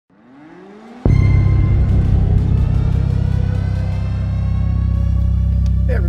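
Opening music: a short rising swell, then a sudden loud hit about a second in that holds as a deep sustained drone with ringing higher tones.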